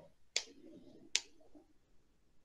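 Two short, sharp clicks about three-quarters of a second apart over a faint low murmur.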